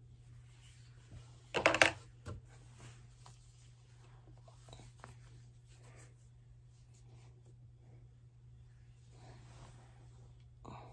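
Handling noise on a phone's microphone: a loud brief rub and rustle about one and a half seconds in, a smaller one just after, then faint scattered clicks and taps over a steady low hum.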